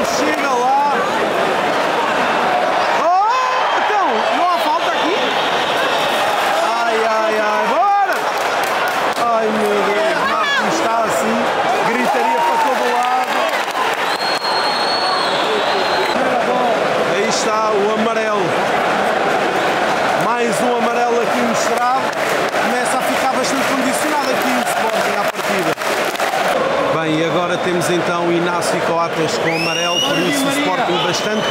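Football stadium crowd: many voices shouting and calling over one another in a dense, loud din, with a short shrill whistle about fourteen seconds in.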